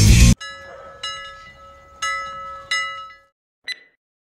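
Rock music cuts off abruptly, then a bell-like metallic ringing is struck about four times, each strike ringing and fading, with a short faint tap near the end before silence.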